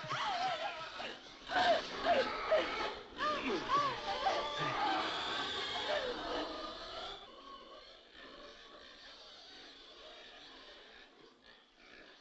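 Shrill, wavering cries that bend up and down in pitch. They are loud for about the first seven seconds, then drop away to a faint background.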